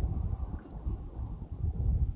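Low, uneven rumble of wind buffeting the microphone, with choppy water against the side of the boat.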